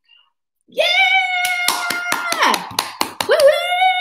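A woman shouts a long, high "Yeah!" held for over a second, then a rising "woo-hoo" near the end. Between the two comes a quick run of hand claps.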